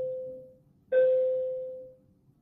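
A bell-like chime sounding the same single note again and again, about every second and a half: the ringing of one strike fades out early on, a new strike comes about a second in and rings down until near the end.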